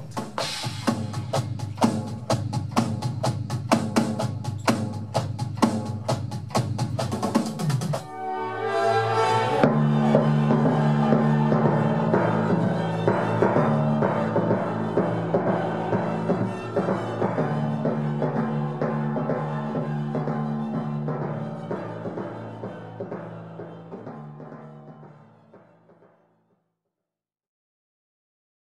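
Electronic drum kit played in a steady, busy groove with kick drum and rapid hits for about eight seconds, then it stops abruptly. Music with sustained low notes takes over and fades out to silence shortly before the end.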